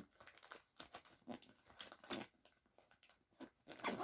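Faint rustling, crinkling and light clicks of small toiletries and packets being packed back into a small bag by hand.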